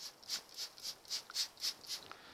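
Hand-pumped trigger spray bottle spritzing plain water onto beef ribs on a smoker grate: a quick run of short hissing squirts, about four a second.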